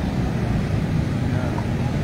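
Steady rumble of heavy road traffic, vehicles passing continuously.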